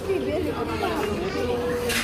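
Background chatter of several overlapping voices in a busy restaurant, with a short sharp clatter near the end.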